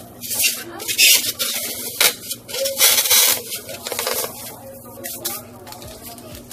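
A block of craft foam being cut with scissors and pushed into a tin bucket: a run of short, uneven rasping scrapes and crunches, loudest about a second and three seconds in.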